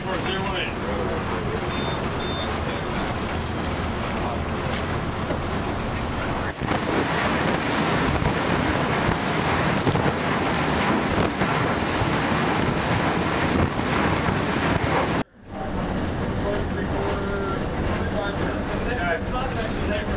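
Steady rush of water and broken ice churning along an icebreaking cutter's hull as it pushes through river ice, with wind on the microphone. The sound is loudest in the middle stretch and drops out sharply for a moment about fifteen seconds in.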